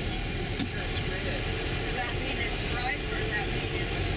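Steady low hum of a tour bus engine and road noise, heard from inside the bus as it moves in slow, congested traffic, with faint talking in the middle.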